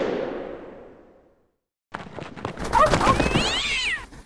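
Animated logo sting. A whoosh swells and fades over the first second and a half. After a short gap comes a clatter of cartoon sound effects, with a cat's meow near the end.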